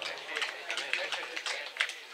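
Voices of football players talking and calling out on the pitch, with several short sharp clicks and knocks mixed in.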